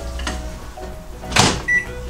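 Microwave oven door shut with a single sharp clack about one and a half seconds in, followed by a short high electronic beep from its keypad as the oven is set to heat.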